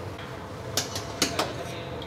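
A few light clicks and small water splashes, mostly about a second in, as a hand moves film-wrapped eggs about in a stainless-steel bowl of cold water.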